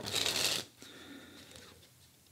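A deck of Fulton's Cinematics playing cards being shuffled by hand: a brisk burst of card noise lasting about half a second, then softer sliding and handling of the cards.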